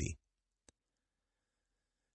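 Near silence with a single short, faint click about two thirds of a second in.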